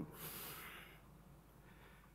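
A deep breath blown out near the microphone: a breathy rush lasting about a second that fades away. It is the exhale of a breath-counting exercise, after a held breath.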